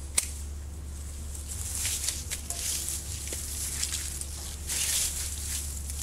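Hand pruning secateurs snipping an olive twig with one sharp click just after the start, followed by two spells of leafy olive twigs rustling and crackling with a few small clicks, over a steady low hum.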